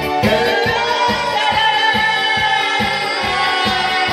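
Amplified singing through a microphone over backing music with a steady beat, the voice holding one long note through the middle.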